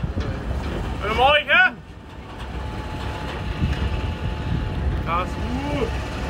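Low, steady rumble of a vehicle on the move, with wind on the microphone. Loud voice calls cut through it about a second in and again near the end.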